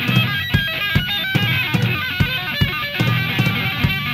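Loud live rock band: an electric guitar plays a run of quick single notes over a steady drum beat and bass.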